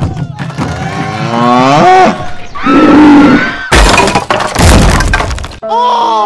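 Dubbed sound effects for two toy animals fighting: two rising, animal-like cries, then a loud smashing crash lasting about two seconds from near four seconds in. Music with steady tones comes in just before the end.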